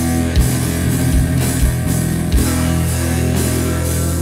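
Heavy rock song: sustained guitar and bass notes with drum kit, kick drum hits and a wash of cymbals.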